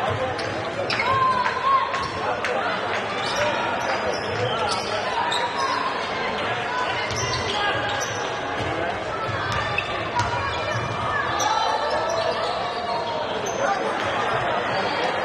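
A basketball being dribbled on a hardwood court, with short high sneaker squeaks from players cutting on the floor. The sound rings and echoes in a large arena hall.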